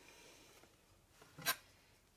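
Faint handling sounds of hands pulling apart and laying sliced seitan on a baking sheet, with one sharp click about one and a half seconds in.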